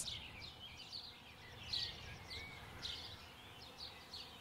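Faint outdoor field ambience: small birds giving scattered short, high chirps, several over a few seconds, over a low steady rumble.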